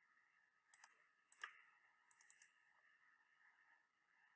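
Faint computer mouse clicks: a quick double click about a second in, a single click, then four quick clicks in a row near the middle, over a faint steady whine.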